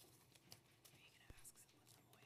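Near silence: faint room tone with soft whispering, a few small clicks and one low thump a little past halfway.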